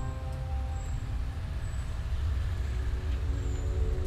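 Low rumble of road traffic, with a bus engine in it, under faint background music that comes back in near the end.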